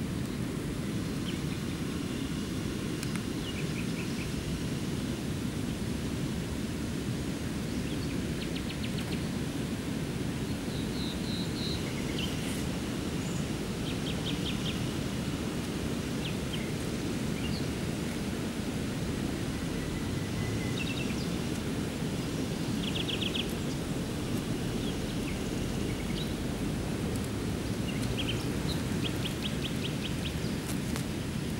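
Steady rushing of a river, with songbirds calling over it in short chirps and quick trills every few seconds.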